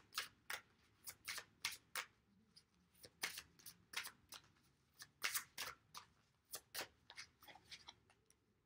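Deck of oracle cards being hand-shuffled: a faint, uneven run of short card snaps and flicks, about two or three a second.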